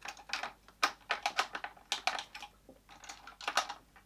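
Lipstick tubes and small plastic makeup items clicking and clattering as they are rummaged through on a makeup shelf: a quick, irregular run of sharp clicks.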